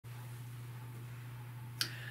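A steady low hum of room tone, with one short sharp click near the end.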